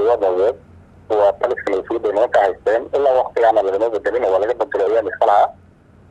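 Speech only: a man talking in Somali in steady phrases with short pauses, with a faint steady hum underneath.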